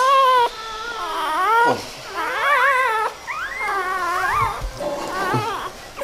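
Newborn puppy crying: about five high, wavering whines and squeals, rising and falling in pitch. The puppy is only a day old and hungry for milk.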